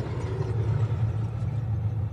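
Battle tank driving across sandy ground: a steady, low engine rumble.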